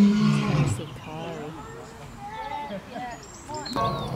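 A lion roaring: one loud, low call in the first second that drops in pitch, followed by quieter short calls.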